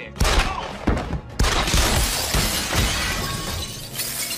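Film shootout sound: a string of gunshots with glass shattering and debris breaking. The breaking glass is densest from about a second and a half in and tails off near the end.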